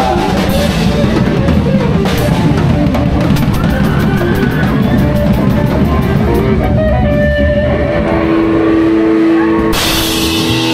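Live rock band playing loud: drum kit, electric guitar and bass, with rapid cymbal hits through the first half. About eight seconds in the drums thin out under a held note, and a cymbal crash comes in just before the end.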